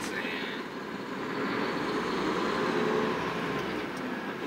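Steady engine and road noise heard inside the cab of a moving tractor-trailer truck.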